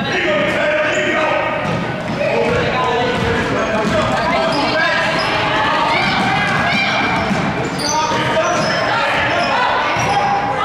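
Basketball dribbled on a hardwood gym floor, with the shouts of players and spectators echoing through a large gym.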